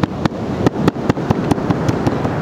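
Small mallet pounding chokka squid cutlets on a cutting board, rapid knocks about five a second, softening the squid so it ties on and shapes more easily.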